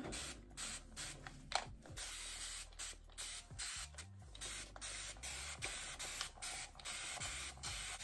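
Hand spray bottle squirting water onto hair in repeated short hissing sprays, a few a second, to wet the hair before combing.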